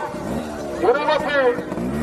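A voice calling out in long, drawn-out phrases, as a race announcer's calls go, with a low, steady motor hum coming in near the end.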